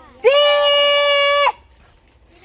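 A woman's loud shout through cupped hands: one long, high, steady held note of about a second and a quarter that cuts off abruptly.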